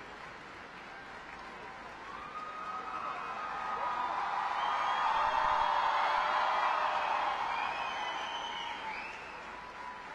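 Audience applauding, swelling to its loudest about midway and dying away near the end.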